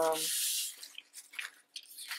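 A soft cloth rubbing across paper in one brisk stroke, wiping excess chalk pastel off a printed page's border, followed by light paper rustles and small taps as the sheet is handled.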